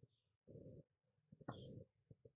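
Near silence: room tone, with two faint, brief low sounds about half a second and a second and a half in.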